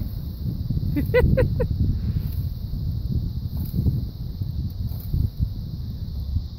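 Low, uneven rumble of wind on the microphone and rustling spruce branches outdoors, with a short four-note laugh about a second in.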